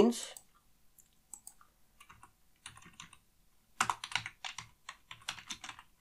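Computer keyboard being typed on: a few scattered clicks, then a quick run of keystrokes starting about four seconds in.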